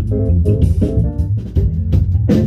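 A live band jamming: a busy electric bass line over a drum kit with frequent cymbal and snare hits, and a keyboard playing along.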